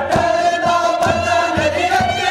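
A noha sung by a male reciter with a chorus of mourners chanting along, over matam: hands striking bare chests in unison about twice a second, keeping the beat of the lament.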